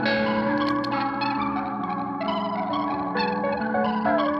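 Live instrumental jazz band music led by electronic keyboards and synthesizer, layering held notes and chords that shift about every second.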